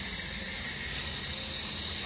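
Garden hose spray hitting a wet concrete patio, a steady hiss of water.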